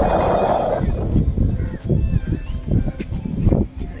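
Wind buffeting a phone microphone by open water, a loud, gusting low rumble, with a few faint high calls about two seconds in.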